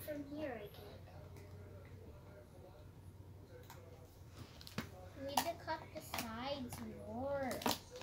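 Children's voices without clear words: a brief call at the start, then a longer stretch of vocalizing in the second half whose pitch rises and falls, over a few small handling clicks.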